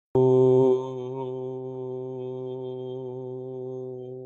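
A single voice chanting one long "Om" on a steady pitch. It is loudest for the first half second, then held more softly and slowly fading.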